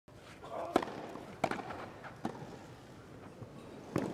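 A tennis ball struck back and forth with racquets in a rally: a few sharp pops, four in all, under a faint murmur.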